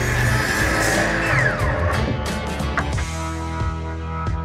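Miter saw cutting through a thick wooden board, its motor winding down with a falling whine about a second and a half in, the noise fading out near three seconds. Background music with a steady beat plays throughout.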